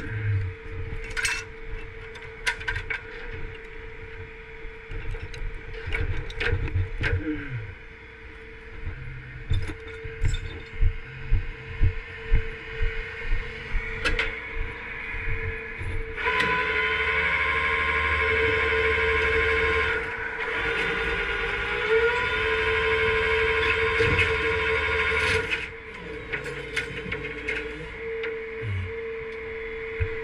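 Chain and metal clanking against the steel deck of a rollback flatbed tow truck as a fallen light pole is rigged. Then, for about ten seconds in the middle, the truck's hydraulics or winch runs with a steady whine that steps up in pitch partway through, over a steady hum.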